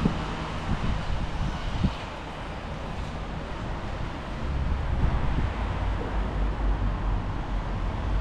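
Wind buffeting the camera microphone outdoors: a steady hiss with a low rumble that grows heavier about halfway through.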